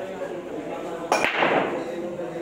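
Break shot in 10-ball pool: about a second in, the cue ball hits the racked balls with one sharp crack, followed by a brief dense clatter of balls colliding as the rack scatters.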